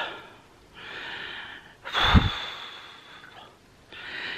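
A woman breathing hard between sentences: a breath about a second long, then a sudden heavy puff of breath that hits the microphone with a thump, trailing off with a thin whistle. She is worn out and hot.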